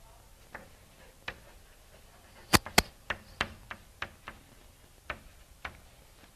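Chalk clicking and tapping on a blackboard while writing: about a dozen sharp, irregularly spaced clicks, the loudest two close together about two and a half seconds in.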